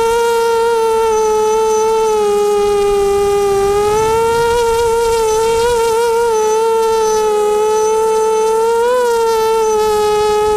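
Radio-controlled aircraft's motor and propellers buzzing steadily, heard up close from the onboard camera during a fast low pass. The pitch dips slightly early on, rises again about four seconds in and lifts briefly near the end as the throttle changes.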